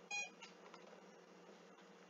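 A single short electronic beep just after the start, the last of a run of beeps about half a second apart, then only a faint steady hum.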